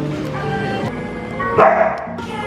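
Background music, with a dog barking once near the end.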